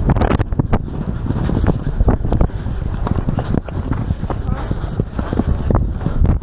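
Racehorse galloping on turf, heard from the saddle: a steady rhythm of heavy hoofbeats thudding into the grass.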